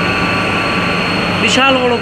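Oil-fired burner of a thermal oil boiler running: a loud, steady noise with a low hum and a faint high whine.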